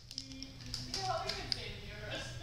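Faint murmured voices with a few light taps and handling noises.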